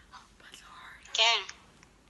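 Whispering, then one short, high-pitched vocal exclamation about a second in, its pitch rising and falling.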